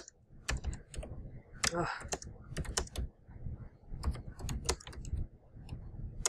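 Computer keyboard typing: irregular keystrokes as a short phrase is typed.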